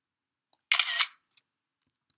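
A short shutter-like click and rattle lasting about half a second, with a sharp click at its start and another at its end. It comes under a second in, out of dead silence.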